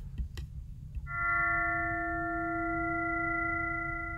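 Max/MSP additive synthesizer note: a 329.6 Hz sine fundamental plus sine partials at inharmonic ratios of about 2.1, 3.4, 4.2 and 5.4, each under its own envelope. It starts about a second in and holds steady, with one upper partial dropping out partway through while the others ring on.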